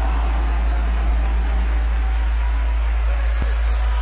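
Film soundtrack drone: a steady, very deep rumble with an even wash of noise above it, held at one level.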